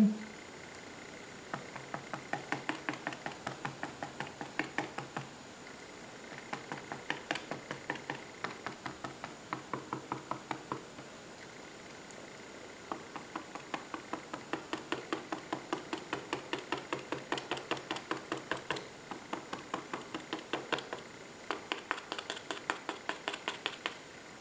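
A spoolie brush loaded with green paint dabbed against sketchbook paper: light, quick taps about four a second, in runs broken by short pauses.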